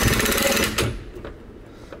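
Geared hand-crank winch ratcheting with rapid clicking as its handle is cranked to hoist a load of kayaks on cable, dying away about a second in.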